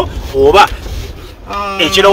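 A man's voice speaking, drawing out one long held sound near the end, over the steady low rumble of a car cabin.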